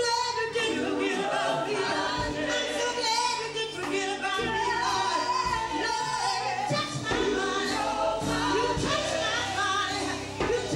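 Live gospel singing by a women's vocal group: a lead singer on a microphone with the others singing backing parts, over low held bass notes from the accompaniment.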